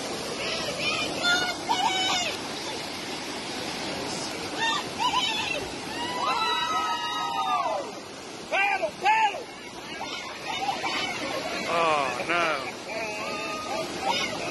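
Floodwater rushing and churning over a low-head dam, a steady roar of water throughout. People's voices call out several times over it, one longer call about halfway through.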